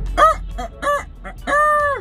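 A man imitating a rooster's crow, cock-a-doodle-doo: a few short high-pitched syllables, then one long held note near the end.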